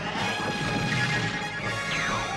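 Orchestral cartoon theme music with held brass-like chords. Near the end, a swooping sound effect falls steeply in pitch.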